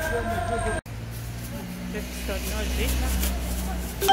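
Steady low engine rumble of a city bus in street traffic, following a short stretch of background music that cuts off abruptly about a second in.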